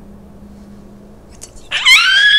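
A woman's high-pitched squeal of excitement, starting abruptly near the end after a quiet stretch and held with a slight waver.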